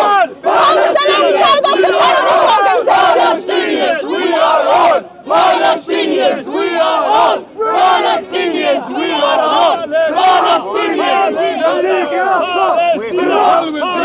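A crowd of protesters shouting slogans in unison, loud and rhythmic, with two brief breaks in the chanting about five and seven and a half seconds in.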